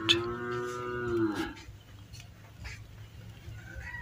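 A cow mooing once, a single steady call of about a second and a half that drops in pitch as it ends. Faint scratching of a ballpoint pen writing on paper follows.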